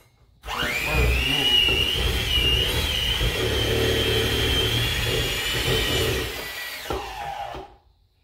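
Electric hand mixer beating softened cream cheese in a metal bowl. Its motor whine comes up about half a second in, runs steadily for about six seconds, then winds down and stops near the end.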